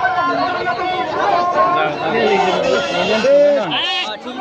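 Many people's voices overlapping as a crowd of marchers talks and calls out, with one voice rising above the rest near the end.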